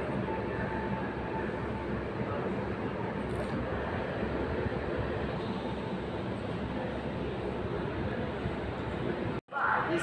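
Steady, even hubbub of a railway station platform, breaking off abruptly near the end.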